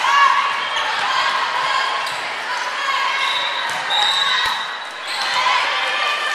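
Indoor volleyball rally: players' and spectators' voices calling out unclearly, with the ball being struck. There is a brief high-pitched squeal about four seconds in and a sharp knock just after it.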